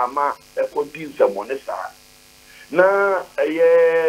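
A man speaking over a telephone line, ending in two long drawn-out vowel sounds.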